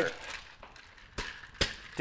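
Two short, sharp knocks of barware about half a second apart, such as a metal cocktail shaker or a glass against the wooden bar top, in an otherwise quiet room.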